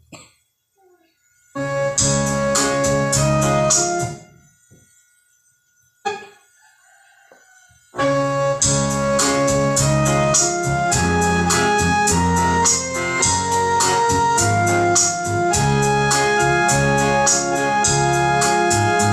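Organ music: a short passage of held chords about a second and a half in breaks off, and after a few seconds' pause the organ resumes with steady chords and a moving melody, leading into a hymn.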